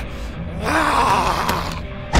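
A man's strained, drawn-out groan over a tense film score.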